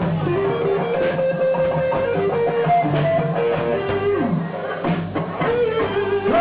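Live blues band playing an instrumental passage between vocal lines: electric guitar lead with held notes and a downward bend, over bass and drums.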